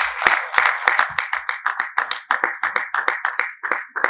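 Applause: many hands clapping together in a dense patter that thins to a few scattered claps near the end.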